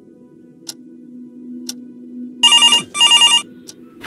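Desk telephone ringing: one double ring, two short bursts, a little over two seconds in, over a clock ticking about once a second.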